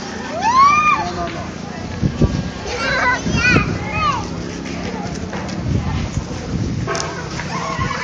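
Young children's high-pitched calls and shouts: one long rising-and-falling call about half a second in, then several shorter ones in quick succession around three to four seconds, over general voices.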